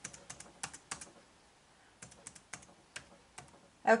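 Laptop keyboard keys tapped in two short runs as a number is typed in, with a pause of about a second between the runs.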